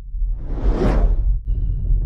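Whoosh sound effect of a logo intro: a rushing sweep that swells over a deep rumble and peaks about a second in, then breaks off briefly before the rumble picks up again.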